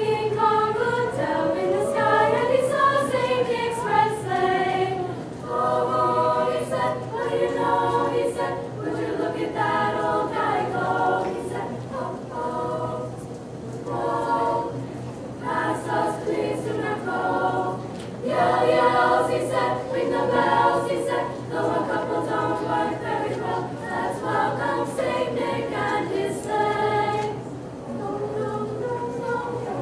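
Small female choir singing a cappella, several voices moving in harmony, phrase after phrase with short breaths between.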